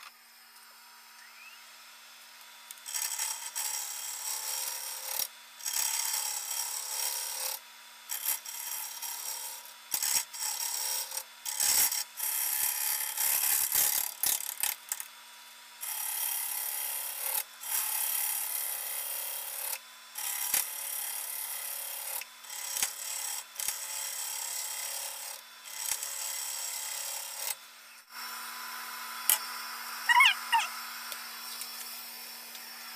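Wood lathe starting up, then a turning tool cutting a spinning sugar maple crotch blank in repeated passes of a second or two, each a loud rush of hiss with short breaks between, over the lathe's faint steady hum.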